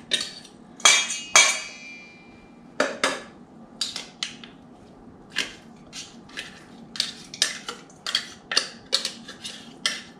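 A metal fork scraping and tapping tuna out of a tin can into a stainless steel mixing bowl: irregular clinks and scrapes, one or two a second. One knock about a second in leaves the metal ringing briefly.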